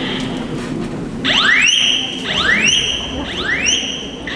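Home fire alarm sounding its alarm tone: three rising whoops about a second apart, each sweeping up and then holding a high note, starting a little over a second in.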